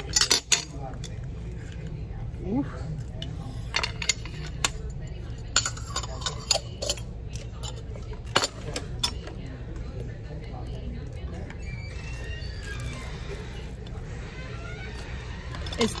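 A spoon clinking and scraping against a glass jar of chili oil and the rim of a noodle bowl as the oil is scooped out: a run of sharp clinks and taps that thins out after about nine seconds.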